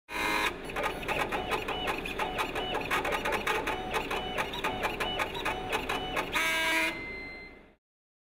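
Laser cutter's stepper motors whining as the cutting head moves in quick short strokes, about five a second, with a longer steady whine at the start and another near the end before fading out.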